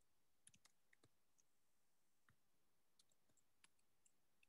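Faint computer keyboard keystrokes: about ten short, irregularly spaced clicks of keys being typed.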